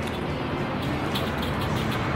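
Steady outdoor background noise with a low hum, and a few faint crisp rustles in the second half.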